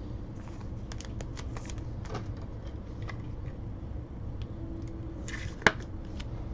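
Trading cards being handled on a table: light rustles and small clicks, with one sharper click a little before the end.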